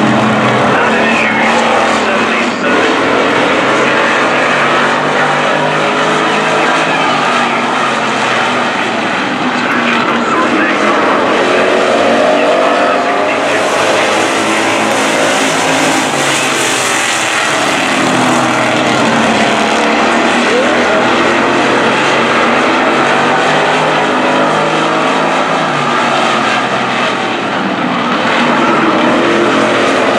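A pack of street stock race cars running flat out around a paved oval, their engines rising and falling in pitch as they pass and power out of the turns, loud and continuous.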